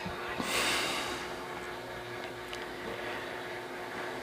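A short breath-like rush of air early on, then low steady room noise with a few faint ticks.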